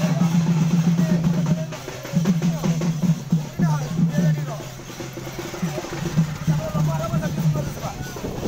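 Drums beating in a repeated rhythm, with people's voices chattering over them.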